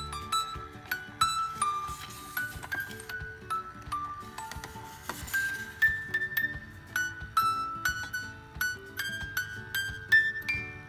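Wind-up toy music box playing its tune after being cranked: a tinkling melody of short plucked notes, a couple a second, over a soft lower line.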